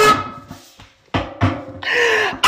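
A man laughing loudly in two bursts, each starting suddenly and fading away.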